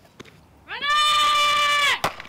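A high-pitched human shout, one drawn-out call of about a second that slides up in pitch at its start and down at its end.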